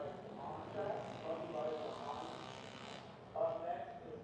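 Indistinct man's voice talking off-microphone, not clear enough to make out words.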